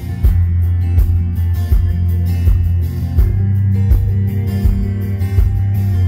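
Live country rock band playing an instrumental song intro: strummed acoustic and electric guitars over held bass notes and a steady kick-drum beat.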